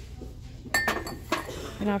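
Hard candle holders clinking against each other as one is lifted from the shelf and set back. There are two sharp clinks, the first with a brief ring.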